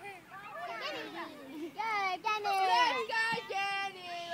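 Several girls' voices calling out during an outdoor ball game, high-pitched, with some drawn-out, sing-song calls in the second half.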